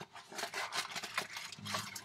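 Foil-wrapped trading-card packs crinkling and rustling as they are pulled out of a cardboard box, an irregular string of small crackles.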